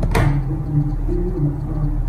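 A metal table knife clicks once against the sandwich maker's plate as a cake slice is turned. Under it, a person hums a low tune in slow, stepped notes.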